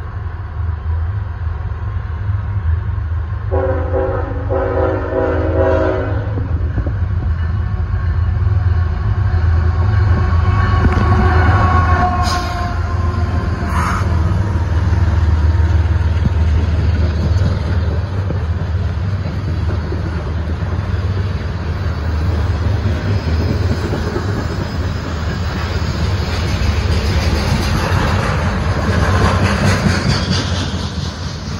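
Diesel-hauled freight train approaching and passing at speed: a steady low rumble from the GE ET44AH and ES40DC locomotives' diesel engines, with one multi-note horn blast of about two and a half seconds a few seconds in. Two sharp knocks follow near the middle as the locomotives go by, then the continuous rolling rumble and clatter of the intermodal well cars.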